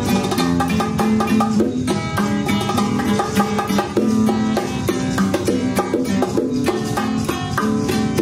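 Instrumental break: a nylon-string classical acoustic guitar picks a quick melodic line over hand drums, with no singing.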